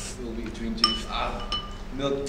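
A spoon clinks once against a ceramic soup bowl about a second in, ringing briefly, with faint voices underneath.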